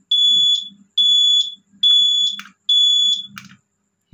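Keeway Superlight 200 turn-signal beeper sounding in time with the flashing indicator, paced by a newly fitted flasher relay: four high-pitched beeps a little under a second apart. It stops near the end.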